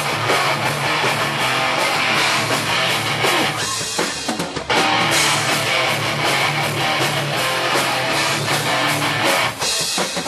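Hardcore band playing live and loud in a basement: distorted electric guitars over a drum kit, with a brief dip in loudness just before the middle.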